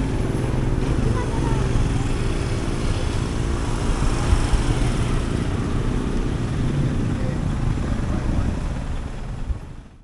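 Street traffic: motorcycle and tricycle engines running close by, with cars and vans passing. The sound fades out in the last second.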